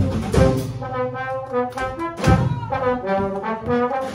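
Live hokum band music: a trombone plays a melodic phrase from about a second in, over the band's rhythm of drums, washboard and upright bass.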